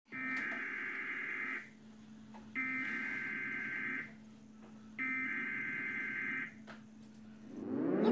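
Emergency Alert System SAME header heard through a TV speaker: three separate bursts of screeching digital data tones, each about a second and a half long with short gaps between them. This is the coded start of an alert, here for a tornado warning.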